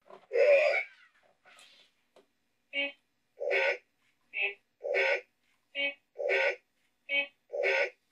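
WowWee Robosapien and Femisapien toy robots trading short electronic vocal sounds in place of words: one long call, then about eight calls back and forth, short and longer by turns, in a scripted yes-and-no argument.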